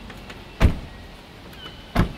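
Two doors of a Jeep Gladiator slammed shut one after the other: a heavy thump about half a second in, then a second, slightly softer one at the very end.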